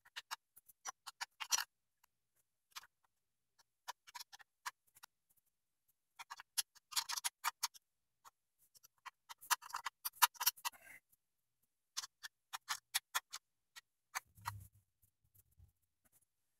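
A 10 mm wrench tightening the belt-tensioner nuts on a stationary exercise bike: several short runs of rapid clicks, fairly faint, coming and going as the wrench is worked. A brief low thump near the end.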